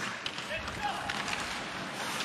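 Ice hockey arena ambience during live play: a steady crowd murmur with faint clicks of sticks and skates on the ice.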